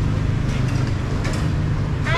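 Steady low rumble of motorbike and street traffic, with a few faint ticks.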